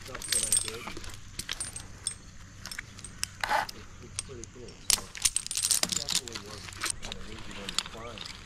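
Metal climbing and rigging hardware (carabiners and chain) clinking and jingling in many short, sharp clicks as it is handled against the tree trunk.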